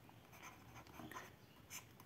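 Near silence with faint scratching of a stylus writing on a tablet, and a light tap near the end.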